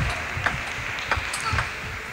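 Table tennis rally: a celluloid-type plastic ball struck back and forth, giving a series of sharp clicks off the rubber-faced bats and the table, a click every quarter to half second.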